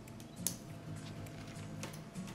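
Scissors snipping dipladenia stems during pruning: a sharp snip about half a second in and another near the end, with fainter clicks of the blades between.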